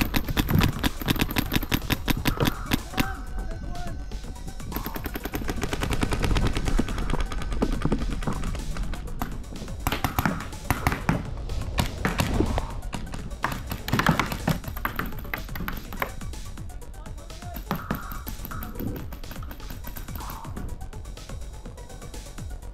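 Paintball markers firing rapid strings of shots, many a second. The firing comes in bursts, heaviest in the first few seconds and again around ten to fourteen seconds in, then thins out. Music plays underneath.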